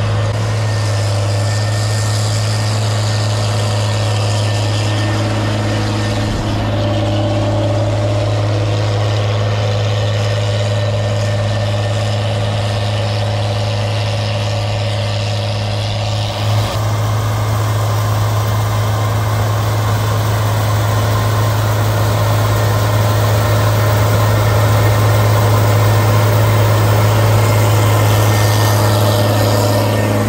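Case IH Module Express 635 cotton picker running steadily while picking, a constant low engine-and-machinery drone. The sound jolts and shifts briefly about halfway through, then grows a little louder toward the end.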